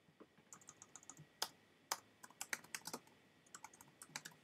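Typing on a computer keyboard: a quick, uneven run of faint keystrokes, a few struck harder than the rest.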